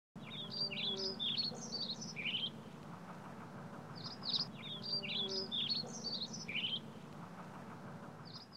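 A songbird singing two similar phrases of quick, mostly falling chirped notes, about four seconds apart, over a faint steady low hum.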